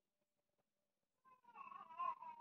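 Near silence at first. About a second and a half in, a faint, high, wavering cry begins and carries on through the end.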